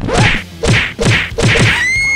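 Four quick whack hits about half a second apart, each a sharp smack with a dropping thud under it, in the manner of comic slap or punch sound effects. A steady high-pitched beep starts just before the end.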